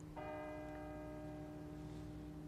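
Quiet background music of sustained held chords: a low note holds steady underneath, and a higher chord comes in just after the start and holds.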